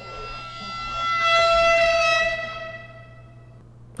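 A single sustained musical note held at one steady pitch, swelling in over the first second or so and fading out about three and a half seconds in. It is an edited-in sound effect.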